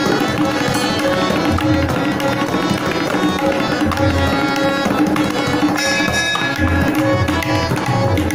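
Tabla played continuously, the low bayan strokes under sharper dayan strokes, with a harmonium holding steady notes alongside.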